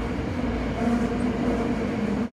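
Tokyo Metro subway car running, heard from inside the car: a steady rumble with a hum.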